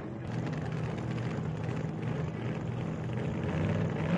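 Car engine running steadily, with a low, even note that starts to rise in pitch right at the end.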